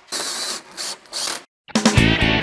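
Cordless drill driving a self-tapping screw in three short bursts, the motor stopping and starting between them. It cuts off, and after a brief gap rock music with drums begins near the end.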